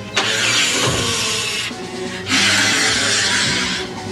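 Two long bursts of harsh, hissing noise, each about a second and a half long, over background music.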